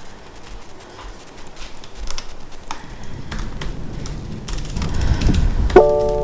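A low rumble building over the last few seconds with a few faint clicks, then near the end a short electronic chime of several steady tones: a car's voice-command prompt tone.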